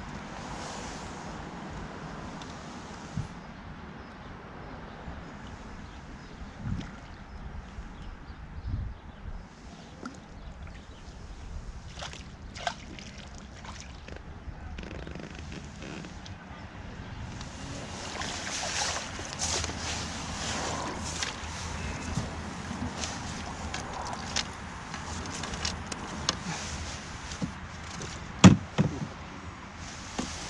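Wind buffeting the microphone. From a little past halfway comes a stretch of splashing as a hooked fish is drawn over the water to the landing net, with a sharp knock near the end.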